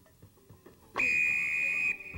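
Basketball scoreboard buzzer sounding once for about a second, a loud steady high electronic tone that starts abruptly after a faint opening second and cuts off.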